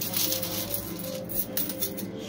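Quarters clinking and rattling in a coin pusher machine, a quick run of small clicks, over steady background music.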